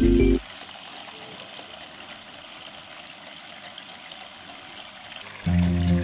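Water trickling and splashing steadily from a small tiered cement tabletop fountain, its many thin streams falling into the water-filled basin. Background music cuts off just after the start and comes back near the end.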